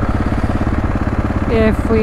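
Dual-sport motorcycle engine running steadily, its firing pulses even and unbroken.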